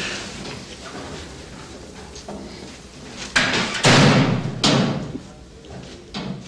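A few loud bangs with a hallway echo, about three to five seconds in, after a stretch of low room noise.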